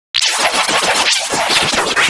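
Harsh, heavily distorted digital audio: the soundtrack of a song commercial mangled by editing effects into a loud, scratchy, noisy blare with no clear words or tune. It starts after a split-second dropout.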